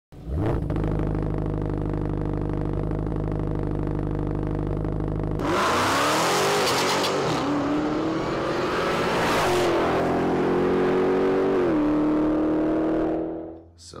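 Car engine starting and idling steadily, then revving hard and accelerating away about five seconds in, its pitch climbing and dropping back twice at gear changes before fading out near the end.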